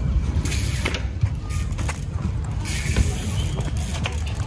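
Trials bike's ratcheting freewheel clicking and tyres knocking on paving stones as the rider hops and balances on the back wheel, with a few sharp knocks, the loudest about three seconds in, over a steady low rumble.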